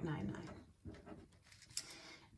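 A felt-tip marker squeaking and scratching faintly on paper as figures are written. The tail of a woman's spoken words comes at the start, followed by a soft low voiced murmur.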